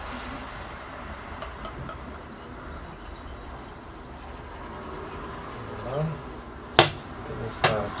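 Stout being poured from a glass bottle into a tilted tulip glass, a faint steady pour, followed near the end by two sharp glass clinks, glass knocking against glass.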